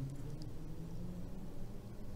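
Quiet background with a faint, steady low hum and one slight click about half a second in.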